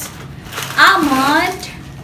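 A woman's voice saying one drawn-out word about a second in, over a faint steady hum.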